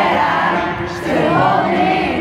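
A stadium crowd singing along in unison to a live pop song, many voices blending together over the amplified music.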